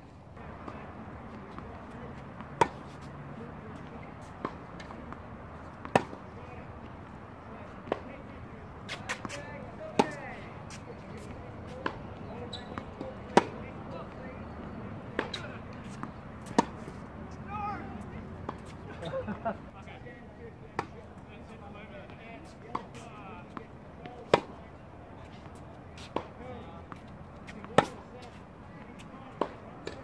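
Tennis rally on a hard court: sharp pops of the ball off racket strings and the ball bouncing on the court. A loud close hit comes about every three and a half seconds, with fainter hits and bounces from the far end in between.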